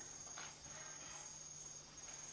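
Faint room tone in a pause between speech: a steady high-pitched whine with a low hum beneath it.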